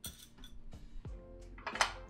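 A few light clinks against a glass mixing bowl as egg yolks are tipped in from a small glass dish, over soft background music.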